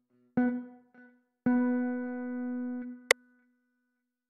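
Sampled electric guitar from FL Studio's FLEX plugin, 'Bright Humbucker AC15' preset, sounding one note twice: a short note, then the same note held for about a second and a half before fading. A sharp click comes near the end.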